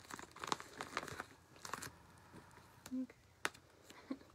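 Faint, irregular crinkling and short tearing sounds of duct tape being handled and pressed into place, with a sharp click near the end.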